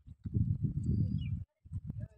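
Wind buffeting a phone's microphone in a gust: a low rumble that cuts off suddenly about a second and a half in. A couple of short clicks follow near the end.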